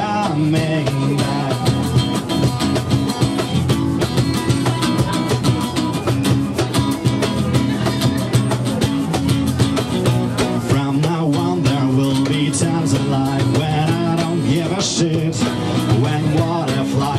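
Acoustic guitar strummed in steady chords, with a cajon and a shaker keeping the beat, played live.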